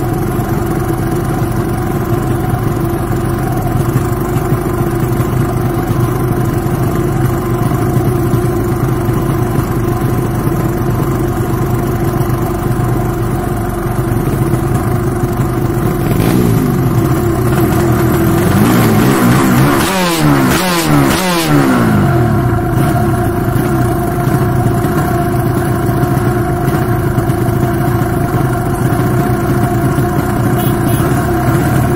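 Drag-race motorcycle engine idling steadily, with a stretch of repeated throttle blips, the pitch rising and falling, about two-thirds of the way through before settling back to idle.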